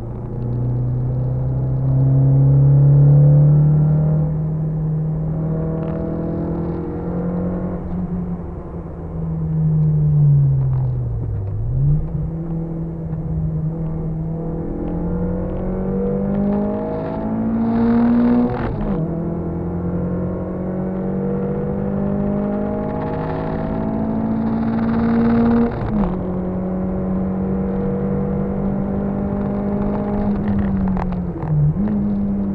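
Car engine heard from inside the cabin, pulling hard through the gears: its pitch climbs steadily and drops sharply at each upshift, twice in the second half. Near the middle the revs fall away and then climb again.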